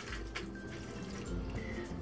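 Faint dripping and trickling of water from rinsed beef slices being pressed in a stainless-steel colander over a sink, with a few small clicks, under quiet background music.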